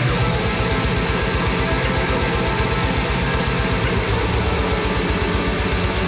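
Extreme metal played on a drum kit over distorted guitars, the kick drums in a fast, even double-bass run that starts at the opening, with a crash cymbal hit at the same moment.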